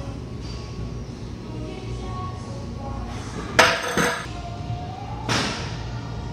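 Background music playing, with a sharp metallic clank of gym weights about three and a half seconds in, a second clank half a second later, and a softer clatter a little after five seconds.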